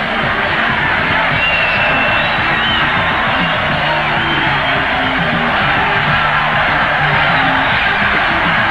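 Live rock band playing at full volume, with a crowd shouting and cheering over the music.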